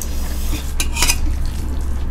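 Metal spoon scraping and clinking against a metal plate of rice, with a couple of sharper clinks about a second in.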